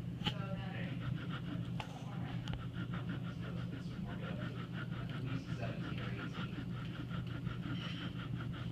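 A steady low hum, with faint voices in the background and a faint rapid crackle.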